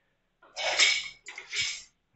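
Two short, breathy rushes of air, each about half a second long, about a second apart: forceful exhalations as the heavy pole blade is swung through the drill.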